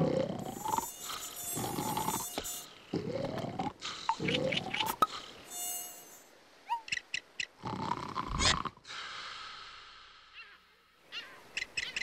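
Cartoon sound effects: a run of rising, whistle-like glides with high buzzing, then short high chirps and clicks.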